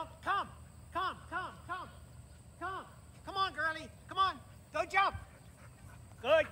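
A man's voice calling out short one- or two-word commands to a dog again and again, roughly once or twice a second, with brief gaps between calls.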